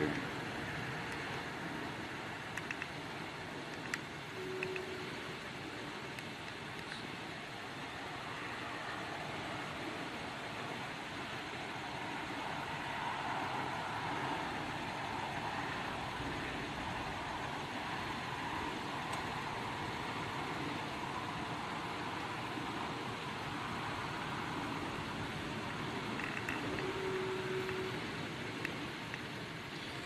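Steady distant road-traffic noise, an even wash of sound that swells a little around the middle.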